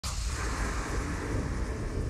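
Deep, steady rumble with a rushing hiss over it, starting abruptly: the sound effect under a TV news station's animated 'welcome back' bumper.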